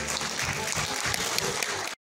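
Audience applauding, cut off abruptly just before the end.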